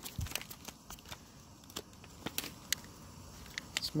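Foil ration pouch being torn open and crinkled as the fig bars are taken out: scattered faint crackles and ticks, with a soft thump right at the start.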